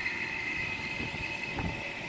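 A steady high-pitched whine with fainter, lower steady tones beneath it and no change in level.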